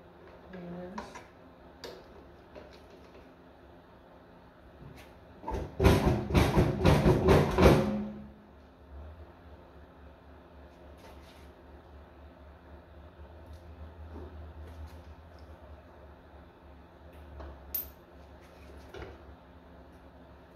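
Hand tools and parts being worked on a dismantled tractor engine. A quick run of about eight loud knocks comes some six seconds in, with scattered lighter clicks and taps before and after.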